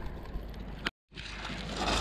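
Faint, steady outdoor background noise with a low rumble, broken about a second in by a click and a brief moment of dead silence where the recording is cut.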